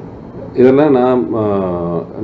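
A man's voice, quiet at first, then drawing out two long held syllables in a chant-like, nearly sung tone from about half a second in.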